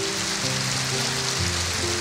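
Large audience applauding, an even rush of clapping, over background music of held chords that shift about every second.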